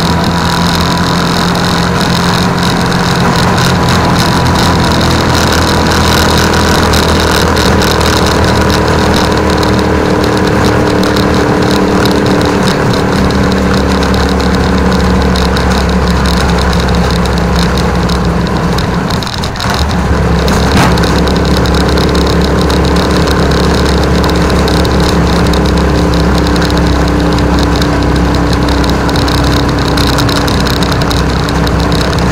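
Rusi Chariot 175 motorcycle tricycle's 175 cc engine running under way, pulling steadily with its note slowly changing as it rides. About two-thirds of the way through the engine note dips briefly, then it pulls again.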